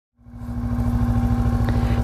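Motorcycle engine idling steadily, fading in over the first half second.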